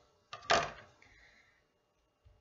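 Pair of scissors set down on a table: a small click, then one sharp clatter about half a second in that fades quickly.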